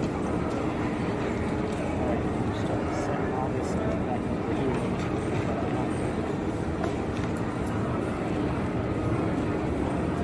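Steady babble of many voices filling a busy exhibition hall, with a few faint clicks of opal slabs knocking against each other as they are sorted by hand in a plastic tub.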